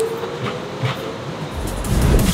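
Train pulling away from a station platform, a steady rumble with a held tone. Electronic drum and bass music with heavy bass comes in about one and a half seconds in.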